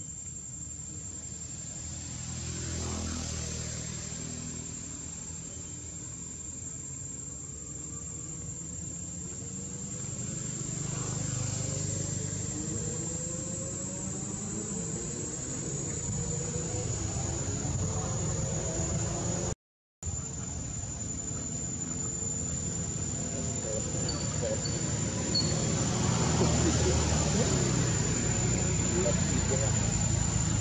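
Outdoor background: a steady high-pitched insect trill over a low rumble, with faint distant voices. It grows louder toward the end.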